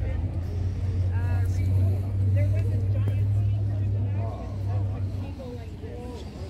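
A motor vehicle engine running close by, a steady low rumble that fades about five seconds in, with people talking in the background.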